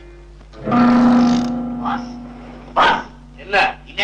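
Film soundtrack: after a moment of quiet, a sudden held musical note swells in and fades over about a second, followed by two short, sharp bursts of sound.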